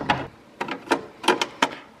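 Plastic filter-media basket being set back into an aquarium's rear filter chamber: several short, sharp plastic clicks and knocks as it is fitted into place.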